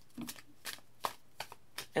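A deck of tarot cards being shuffled by hand: about five short, separate card snaps over two seconds.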